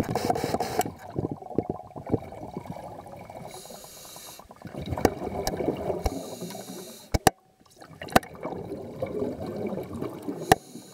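Water sloshing and gurgling around a camera held just under the surface, uneven and churning, with a few sharp knocks a little after seven seconds in and again near eight seconds.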